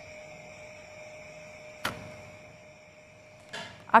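Steady faint background hum and hiss with thin high tones, broken by one sharp click about two seconds in and a brief rustle near the end.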